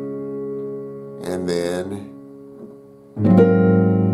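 Piano chord held and slowly dying away, then a new full chord struck with both hands a little after three seconds that rings on loudly.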